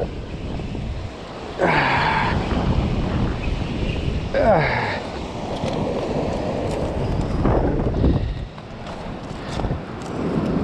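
Wind buffeting the microphone over the steady rush of surf breaking on a rocky shore. A man's short vocal sounds cut in three times, about two, four and a half, and seven and a half seconds in.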